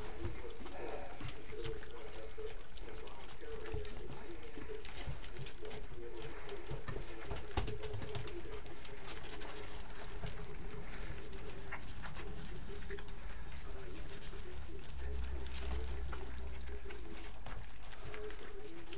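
A litter of young puppies eating weaning food from a shared dish: a continuous overlapping chorus of small grunts and whines from several pups at once, with wet lapping and smacking clicks.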